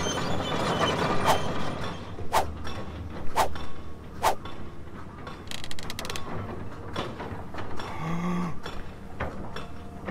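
A large sheet of drawing paper being held up and handled: rustling and crackling, with four sharp snaps about a second apart in the first half and a short flurry of crackles about six seconds in.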